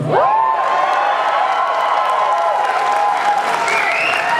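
Theatre audience applauding and cheering, with several long high 'woo' whoops that rise at the start and are held.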